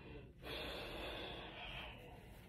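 A person's long breath out, a soft hiss lasting about a second and a half.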